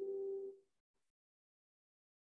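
Soft instrumental background music: a held chord of a few steady tones that cuts off suddenly about half a second in, leaving dead silence.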